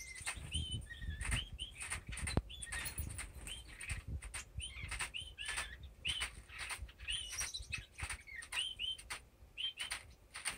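Owl finch (double-barred finch) in courtship display: short rustling wing flutters and small hops on the cage floor, with many short, hooked chirps, about two a second.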